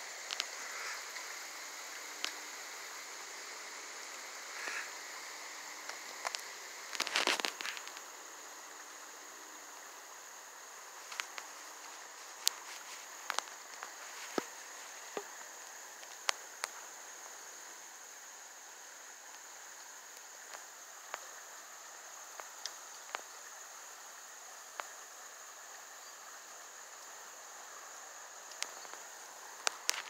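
A steady, high insect chorus, with scattered small clicks and a brief louder rustle about seven seconds in.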